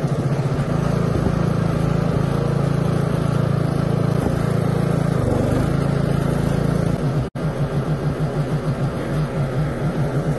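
Westwood S1300 ride-on mower's engine running steadily while driving. After a brief break about seven seconds in, the engine note throbs unevenly.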